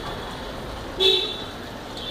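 A vehicle horn gives one short toot about a second in, over steady street background noise.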